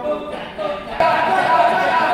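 Kecak chorus of many men chanting together, with held sung tones over a dense rhythmic chatter of voices; the chanting gets suddenly louder about a second in.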